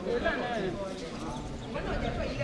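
Indistinct voices of several people at once, overlapping, with no clear words.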